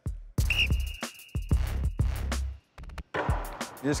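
A sports whistle blown once: a single steady, high blast of about a second and a half, starting about half a second in, over background music with a low beat.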